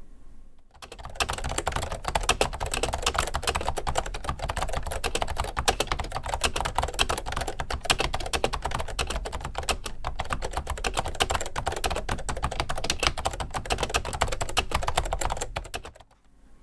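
Fast typing on a keyboard with Scorpius dome-with-slider switches, a rapid, unbroken stream of keystrokes starting about a second in. The strokes sound full, round and bassy and quite loud, not rattly.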